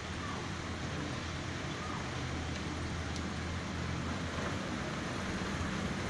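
Air cooler fan motor, just rebuilt with a new bush and shaft, running steadily with a low mains hum. It is on a weak 2.5 µF capacitor instead of the usual 4 µF.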